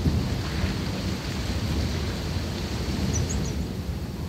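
Wind buffeting the microphone: a steady low rumble with a hiss above it. A few faint high chirps come near the end.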